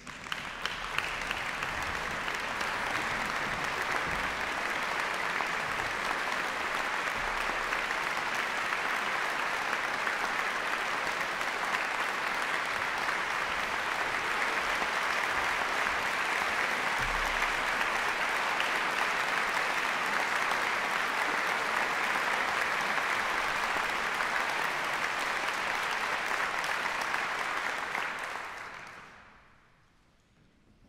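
Concert audience applauding steadily, the applause dying away near the end.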